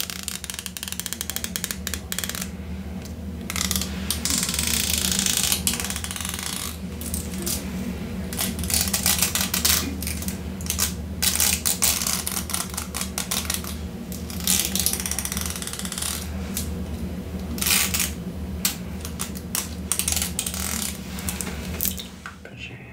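Fingernails run along the teeth of a fine-tooth comb, a rapid rippling clicking in repeated strokes of a second or two each, over a steady low hum.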